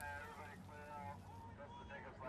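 Faint shouting from people some way off, in short drawn-out calls, over a low steady rumble.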